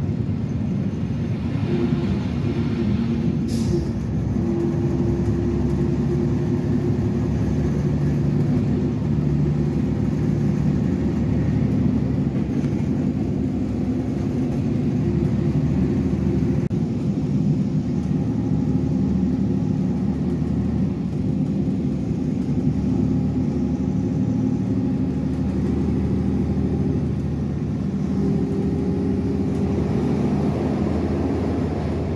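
Diesel passenger train running, heard from inside the carriage: a steady engine drone over the rumble of the wheels on the rails, its pitch shifting a little now and then. A short high-pitched sound comes about three and a half seconds in.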